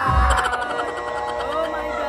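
Singing with music, held notes sustained through most of the stretch, after a brief low bump at the start.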